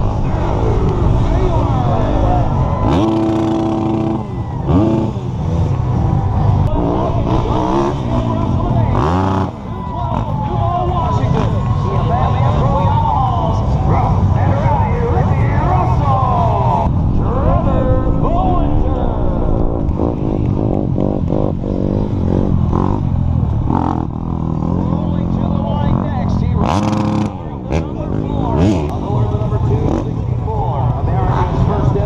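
Several off-road racing motorcycle engines revving and running at once, their pitches rising and falling over one another, mixed with crowd voices.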